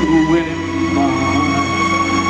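Live band playing a slow R&B ballad, sustained chords held steadily, with a voice briefly over them near the start and again about a second in.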